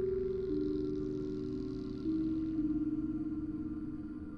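Dark ambient background music between stories: a few long, held notes entering one after another over a steady low bed.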